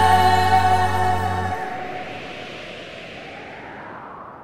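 The final held chord of an Italian pop song, with a long note wavering in vibrato over a steady bass. It cuts off about a second and a half in, and the echo fades away.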